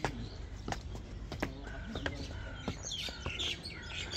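Small birds in the trees chirping, with short high chirps and a few brief whistled notes; sharp ticks come at intervals of under a second.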